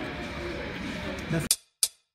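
Restaurant background chatter with faint clinking of dishes, cut off abruptly about one and a half seconds in, followed by two brief sharp high-pitched hits and then silence.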